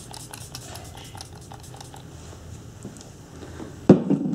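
Repeated pumps of an Algenist face-mist spray bottle: a series of short clicks and faint spritzes. One sharp knock just before the end.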